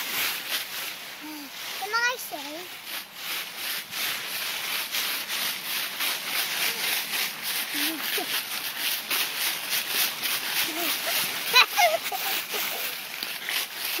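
Footsteps crunching and rustling through a thick layer of dry fallen leaves, a quick, even run of crackles that builds from about three seconds in. A small child's short vocal sounds come through it, with a high rising squeal near the end.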